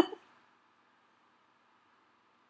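The tail of a woman's short laugh, gone within the first half second, then near silence with only a faint steady hiss.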